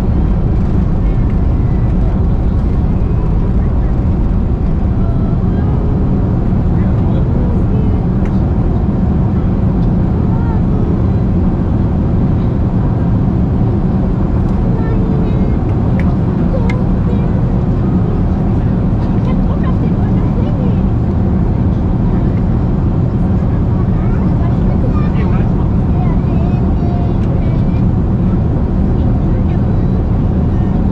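Steady cabin noise inside a Boeing 747-400 in flight: a loud, even rumble of engines and airflow, heaviest in the low end. Faint passenger voices lie underneath.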